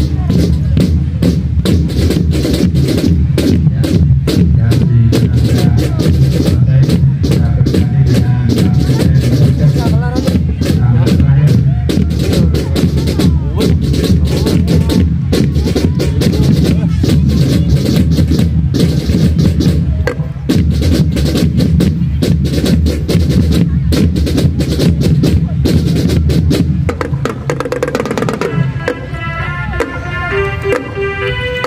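Marching band drumline playing a fast, dense drum cadence on bass drums and marching drums, with a heavy low end. Near the end the drumming thins out and pitched melodic instruments come in.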